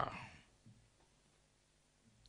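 A man's amplified speaking voice trailing off in the first half second, then near silence: room tone.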